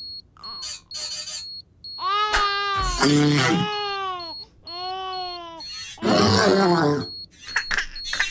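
Cartoon baby crying in several long, wavering wails, with a louder, rougher outburst near the end. A faint high-pitched electronic beep pulses on and off underneath.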